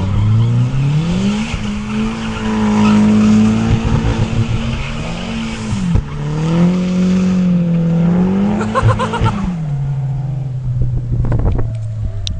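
Nissan drift car's engine held at high revs while its rear tyres spin and squeal through a smoky drift. The revs dip briefly about six seconds in, climb again, then drop to a steady lower note for the last couple of seconds.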